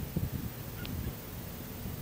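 Low, uneven rumbling and thumping on a handheld microphone, with one brief faint high chirp just under a second in.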